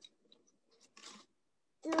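Faint handling noise of wooden craft sticks, a few light clicks and a short rustle about a second in, heard through a video-call microphone.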